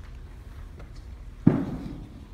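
A single loud thump about one and a half seconds in, with a brief ringing tail, as two performers settle onto the bench of a grand piano.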